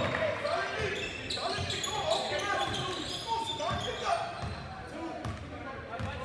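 A basketball bouncing on a hardwood gym court during live play, the bounces coming quickly and irregularly, mixed with players' and spectators' voices calling out in the large hall.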